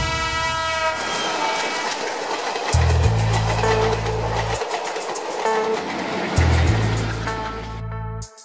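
A locomotive horn sounds at the start and fades within the first second or so, under dramatic background music with two long, deep bass notes and a fast ticking beat.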